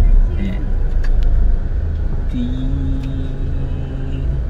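Low, steady engine and road rumble heard from inside a car's cabin as it drives slowly along a street. A brief voice sound comes about half a second in, and a level, held tone comes in about halfway through.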